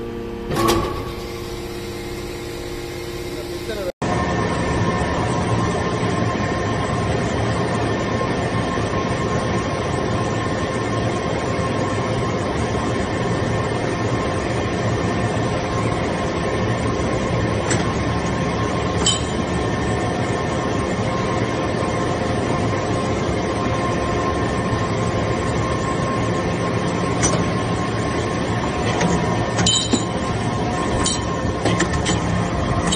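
Hydraulic metal briquetting press and its power unit running: a steady mechanical drone with a hum of several tones and a few sharp clinks. Near the start there is a clank as finished briquettes are pushed out, and the louder steady running begins about four seconds in.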